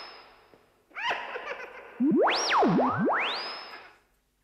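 Electronic synthesizer sound effect: a single whistle-like tone that swoops up and down in pitch. It holds a high note and fades, a short falling chime of several notes sounds about a second in, and near the middle the tone glides up, drops low and glides back up to a high note that fades away.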